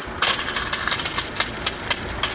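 Fire hose nozzle spraying a straight stream of water under pressure: a loud, steady hiss with irregular crackle and a low rumble underneath.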